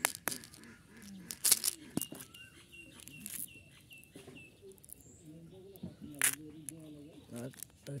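Handling of a plastic strawberry-shaped candy case: sharp plastic clicks as it is opened and small hard candies clicking as they tip into a palm. A bird chirps a quick run of short high notes between about two and four seconds in, and a faint voice murmurs.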